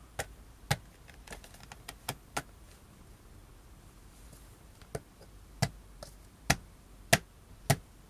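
Plastic sports water bottle being handled, its lid twisted and snapped shut, making a dozen or so sharp, irregular plastic clicks and taps, the loudest in the second half.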